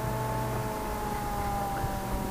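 Moving car heard from inside the cabin: a steady low road-and-engine rumble under a steady whine of several tones that drifts slightly lower in pitch.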